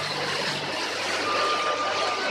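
Motor of a river cruise boat under way, a steady low hum beneath a wash of water and wind noise. A thin steady tone joins in a little over a second in.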